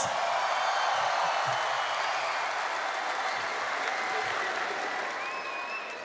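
A large arena audience applauding, the clapping slowly dying down.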